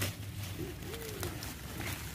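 A dove cooing: two low, soft, rising-and-falling coos, about half a second and one second in, over a steady low hum.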